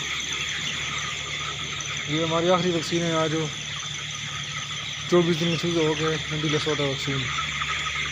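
A large flock of young broiler chickens chirping together as a continuous, dense high-pitched chatter.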